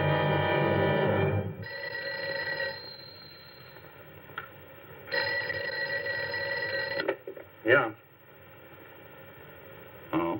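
Orchestral film music ends about a second and a half in. Then a telephone bell rings twice, the second ring about two seconds long. A short loud sound follows near the end.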